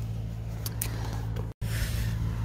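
A steady low hum, with a couple of faint clicks just under a second in and a brief dropout to silence about one and a half seconds in.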